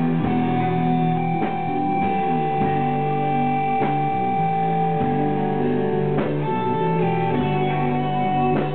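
Live melodic doom/death metal band playing: electric guitars and bass hold long, slow notes over drum hits about once every second and a bit. The sound is dull and lacks treble.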